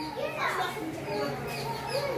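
Children's and adults' voices chattering and calling out, with one falling exclamation early on, over a steady low hum.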